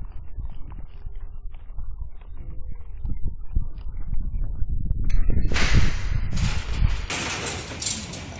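Wild hogs feeding and rooting inside a corral trap, heard through a trail camera's microphone: scattered short knocks and clicks over a low rumble. About five and a half seconds in come two longer bursts of harsh noise.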